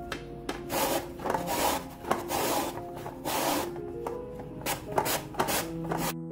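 Hard raw quince pushed back and forth over a plastic julienne mandoline slicer, its steel blade rasping through the flesh in a run of scraping strokes. The strokes come about once a second, then turn shorter and quicker near the end.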